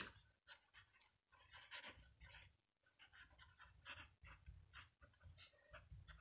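Faint scratching of a marker pen writing on paper, in short irregular strokes.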